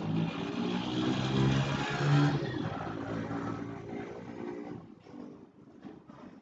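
A motor vehicle passing by: its engine rises to its loudest about two seconds in and fades away by about five seconds.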